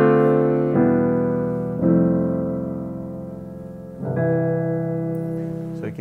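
Yamaha AvantGrand NU1X hybrid upright piano played in slow, sustained chords. Each chord is struck and left to ring and fade, with new chords about one second, two seconds and four seconds in.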